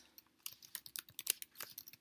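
Typing on a computer keyboard: a quick, uneven run of key clicks starting about half a second in.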